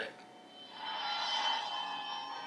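TV show soundtrack playing from a computer: a steady drone swells in about half a second in and holds.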